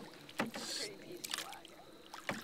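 Canoe paddling: paddle blades splashing briefly in the water, with a few sharp knocks, typical of paddles striking the canoe's hull.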